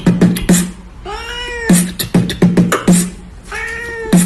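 Beatboxing: quick runs of mouth-made kick and snare strokes, broken twice by a cat's long, rising-then-falling meow, about a second in and again near the end.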